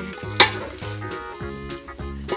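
Utensils stirring and scraping noodles in a metal bowl, with a sharp clink against the bowl about half a second in. Background music plays underneath.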